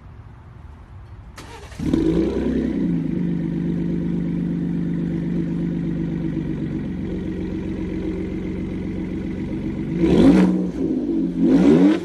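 A 2017 Ford Raptor's 3.5-litre twin-turbo EcoBoost V6 heard at the tailpipe through a prototype Corsa cat-back exhaust. It fires up about two seconds in with a brief flare, settles into a steady idle, and is then revved twice in quick succession near the end.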